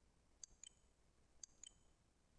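Two faint computer mouse-button clicks about a second apart, each a quick press and release, over near-silent room tone: the file is selected, then clicked again to open its name for renaming.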